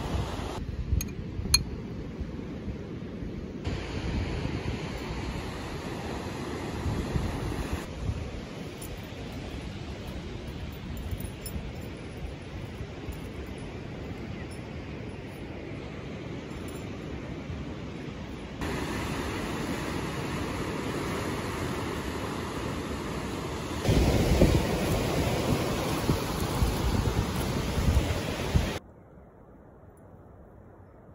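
Wind buffeting the microphone and sea surf washing on the shore, over a run of short outdoor clips cut together. The level jumps at each cut and is loudest from about 24 seconds in, then drops to a low background near the end.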